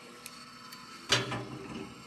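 Quiet workshop background with a faint steady machine hum and a few light clicks; about a second in, a man gives a short hum or murmur that fades away.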